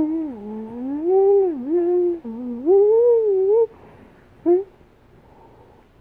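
A child humming a wandering tune with her mouth closed, the pitch gliding smoothly up and down for about three and a half seconds. One short hum follows about a second later.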